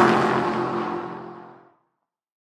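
Logo intro sound effect: a whoosh with a low pitched drone under it, dipping slightly in pitch at its loudest, then fading away about three quarters of the way through.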